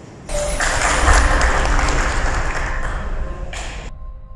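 A roomful of people clapping: dense, steady applause that starts suddenly about a quarter second in and is cut off abruptly just before the end.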